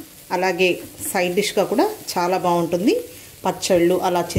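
A woman speaking over the low sizzle of shredded cabbage and moong dal frying in a pan, stirred with a spatula. Her voice is the loudest sound, and the sizzle is heard in the gaps between phrases.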